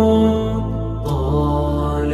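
Nasheed: a male voice holding a long sung note over a low sustained vocal-style drone that steps to a new pitch a couple of times.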